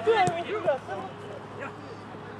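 Men's voices calling out on a football pitch, loudest in the first second, with one sharp thump about a quarter of a second in, then quieter open-air background.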